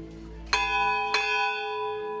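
Large hanging metal temple bell rung by pulling its rope: two strokes a little over half a second apart, each ringing on in a long, steady tone.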